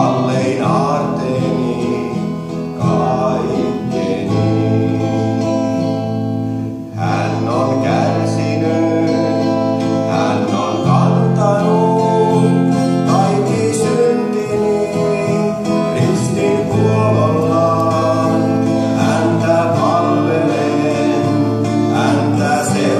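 A man singing live to his own acoustic guitar, with a short break in the phrase about seven seconds in.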